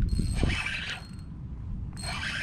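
Spinning reel working against a hooked fish, its gears and drag whirring and clicking for about the first second, then quieter.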